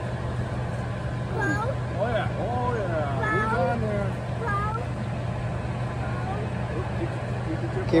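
A steady low hum runs throughout. Over it, from about a second and a half in until past four seconds, a person's voice is heard more quietly, rising and falling in pitch without clear words.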